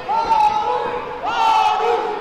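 Two drawn-out shouted calls from a voice, one at the start and another about a second and a half in, each held for about half a second.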